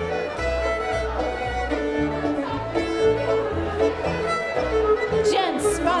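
Live contra dance band playing a fiddle-led dance tune over a steady bass line. The caller's voice comes in just at the end.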